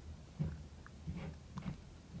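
A few faint, soft dabs of a makeup sponge pressed against the skin while blending concealer, spaced irregularly over a low room hum.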